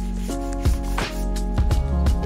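Background music with a steady beat and sustained chords. The chord changes about a quarter second in.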